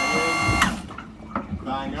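An electric hydraulic pump runs with a steady whine for about a second and then cuts off, driving the hydraulic backstay out on command.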